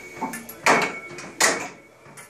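Metal clanks of a Bodycraft functional trainer's adjustable pulley carriage being moved down its column and locked in place: a few light clicks, then two sharp clanks under a second apart.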